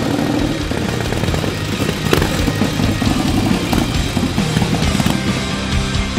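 A chopper motorcycle's engine running, mixed with rock music that comes in over it and takes over near the end.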